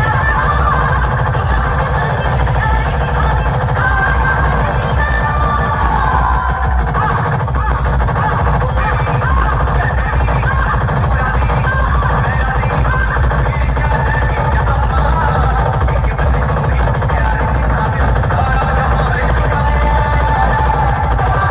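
Loud electronic dance music with heavy, unbroken bass played through stacked DJ speaker boxes, at a steady level.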